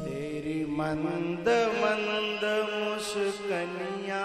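Krishna bhajan: a voice singing long, wavering held notes in a chant-like line over a steady drone, with no drums.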